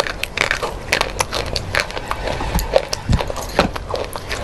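Close-miked crunching as a person chews a brittle white stick: a quick, irregular run of sharp, crisp cracks.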